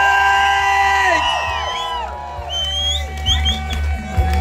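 Live rock band's amplified electric guitars ringing out in long held notes with sliding pitch as the song ends, dying away a little over a second in over a steady low amplifier hum. A few short, high rising whoops from the crowd follow near the end.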